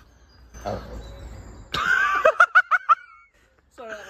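A person laughing: a loud, high-pitched giggle of several quick pulses a little under two seconds in, trailing off before speech resumes.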